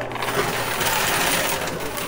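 Coin pusher machine running: the motor-driven pusher shelf sliding back and forth with a steady mechanical whirr, and quarters scraping and clinking across the playfield.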